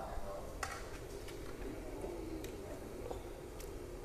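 Quiet, scattered clicks of a metal spatula against a large aluminium wok as pork is stir-fried over a gas burner, with a faint low murmur of voices.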